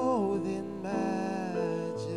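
A male solo voice sings a slow melody into a microphone, sliding and ornamenting the notes near the start, over sustained backing chords.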